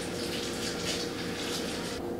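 Tilapia fillets sizzling steadily in melted butter and olive oil in a frying pan.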